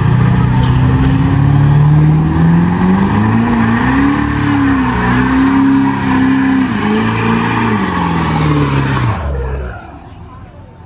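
Chevrolet Silverado pickup doing a burnout: the engine is held at high revs, its pitch climbing and dipping several times, over the steady noise of rear tyres spinning on pavement. The engine drops off suddenly near the end.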